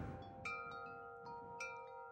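Faint chime notes in soft meditation background music: a few notes struck one after another, starting about half a second in, each ringing on and overlapping the last.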